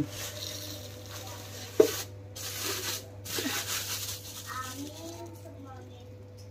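Sugar poured from a plastic bag into a steel storage tin: a light hiss of granules and rustling plastic, with one sharp knock just before two seconds in.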